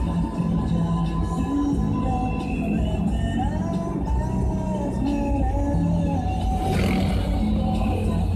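Music playing from the car radio inside a moving car, with sustained melodic notes over the low rumble of the drive.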